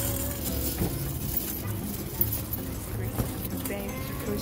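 Metal wire shopping cart rolling over asphalt, its wheels giving a steady low rumble while the basket rattles and clinks.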